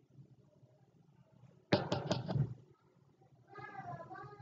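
A sudden clattering knock with a few sharp clicks about two seconds in, then a short high-pitched wavering call near the end.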